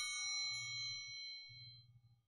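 Altar bells rung at the elevation of the host, several clear ringing tones fading away and dying out near the end.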